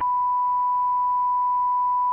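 A steady 1 kHz sine-wave line-up tone on a broadcast holding loop, starting abruptly and holding one pitch. It fills the gaps between repeats of a recorded station announcement while the sitting is suspended.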